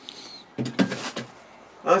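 A short clatter of objects being shifted and set down on the shelves of an open refrigerator, a quick run of knocks and clinks lasting about half a second.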